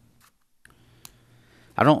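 Low room tone with a brief dropout and a few faint clicks, the clearest about a second in; a man starts speaking near the end.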